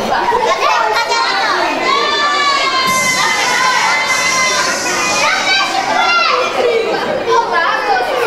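Audience of many children shouting and calling out together at once, a loud, steady jumble of high voices with no single clear speaker.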